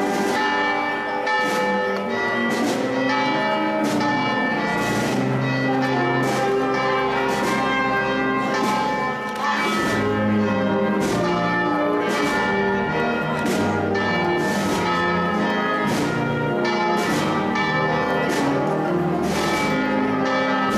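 Church bells ringing in a continuous, irregular peal, with overlapping strikes and a long ringing decay after each.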